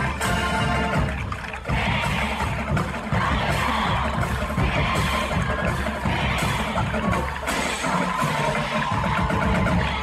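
High-school marching band playing a stands tune, with trumpets, trombones, sousaphones and saxophones, loud and steady, with repeated swells about once a second.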